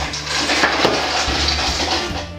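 Ice cubes tipped out of a stainless steel bowl into punch in a hollowed-out pumpkin: a steady clatter of cubes sliding and knocking against the metal, with splashing into the liquid.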